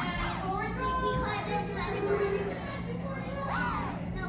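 Young children's voices chattering and calling out, with one high rising cry near the end.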